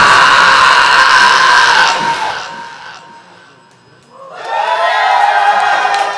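A live rock band's final chord rings out and fades away over the first two to three seconds. Then, about four seconds in, the crowd breaks into cheering with many high voices.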